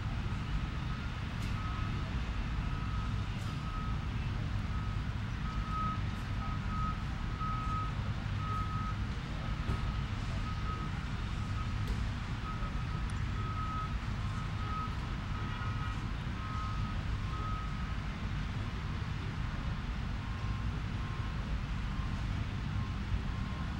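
A heavy vehicle's reversing alarm beeping steadily, about one and a half beeps a second, over a steady low rumble. The beeps fade near the end.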